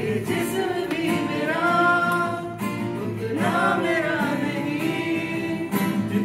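Acoustic guitar played live, with a voice singing a melody along with it.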